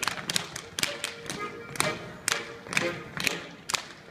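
Schuhplattler dancers slapping their thighs, knees and shoe soles and stamping on a wooden dance floor: a rapid, uneven run of sharp slaps, about three a second, over folk dance music.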